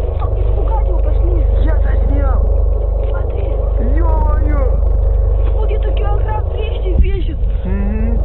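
Young people talking close to the camera microphone in a foreign language, over a steady low rumble on the microphone; a sharp knock about seven seconds in.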